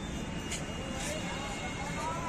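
Busy city street ambience: a steady hum of road traffic with faint voices of people around.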